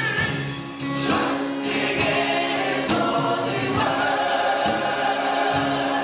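A gospel praise team singing together in harmony into microphones, amplified through the church sound system.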